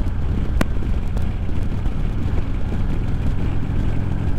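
Harley-Davidson Road King Special's V-twin engine running steadily at highway cruising speed, with wind rush over the handlebar-mounted microphone. There is one short click about half a second in.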